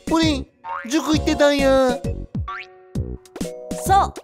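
A cartoonish voice speaking over bouncy children's background music, with short falling-pitch springy sound effects and a rising swoop about halfway through.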